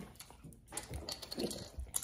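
Quiet chewing of a gummy fruit snack, with scattered small clicks and crackles from a plastic water bottle being opened and handled.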